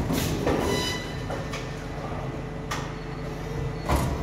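Paper-finishing line running, a booklet maker feeding a Horizon HT-30 three-knife trimmer. A steady machine hum is broken by a sharp mechanical clack about once a second as each booklet cycles through.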